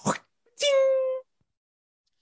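A short sharp sound, then a high, steady 'ding' called out and held for under a second, a voice imitating a bell as a punchline.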